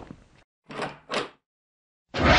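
Two short swishing swells about a third of a second apart, following the fading end of a knock, then dead silence: intro sound effects.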